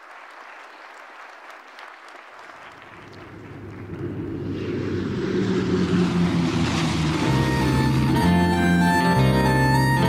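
Applause fading out, then a low propeller-aircraft engine drone swelling steadily louder. About seven seconds in, the opening of a song comes in over it, with sustained organ-like chords.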